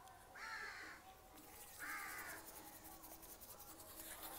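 Two faint crow caws, each about half a second long, about a second and a half apart.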